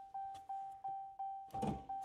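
A Ram pickup's door-open warning chime: short, identical mid-pitched tones repeating about three times a second. Near the end comes a thump as the hood release inside the cab is pulled.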